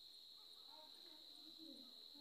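Faint, steady, high-pitched insect trill over near silence.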